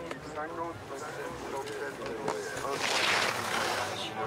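Voices in the first half, then a short hissing rush of skis sliding over snow about three seconds in, as the freeskier pushes off from the start and drops in.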